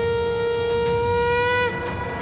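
Conch shell (shankha) blown in one long steady note. Near the end the pitch lifts slightly, then the note breaks off, leaving a fainter tail.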